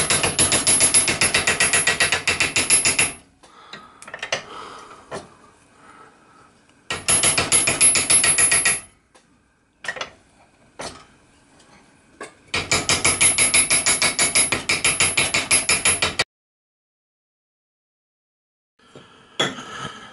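Small metal hammer tapping the flange of a copper boiler end held in a steel bench vise, in three runs of quick, even, ringing taps. The tapping closes the flange down over the edge to form the end cap.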